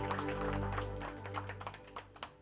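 A held final chord of music fading out under audience applause. The clapping thins to a few scattered claps near the end.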